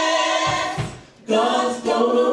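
A gospel praise team of women singing in harmony: a held note dies away just past halfway, and the voices come back in together on a new chord.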